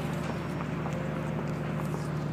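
A steady low hum with scattered faint light clicks.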